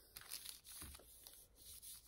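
Faint rustle of parchment paper as a hand presses and smooths it flat over a diamond painting canvas.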